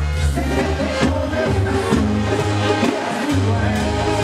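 Live banda sinaloense music: a brass band playing with a low tuba-style bass line and steady drum strokes, and a male lead singer singing into the microphone.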